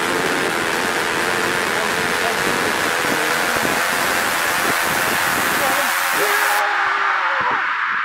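Steady rushing wind noise on the microphone over a voice. The rushing cuts off abruptly about two-thirds of the way through, leaving the voice clearer.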